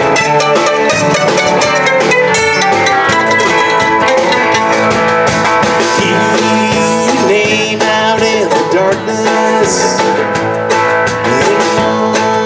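A live bluegrass band playing: mandolin, electric guitar, upright bass and drum kit together, with a steady drum beat.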